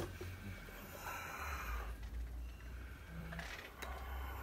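A light tap of a clear plastic cup set down on a table, then faint breathing over a low hum.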